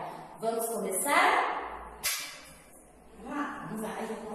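A woman speaking in short phrases, with one brief sharp click about halfway through.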